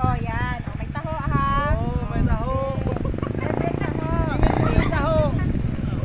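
People talking back and forth in the open air, with a steady low rumble of wind buffeting the phone's microphone underneath.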